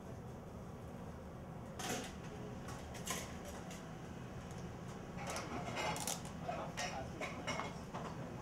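Kitchen work at the pass: scattered clinks and knocks of utensils against a metal pan and a china plate over a steady low hum, with a couple of knocks about two and three seconds in and a busier run of clatter in the second half.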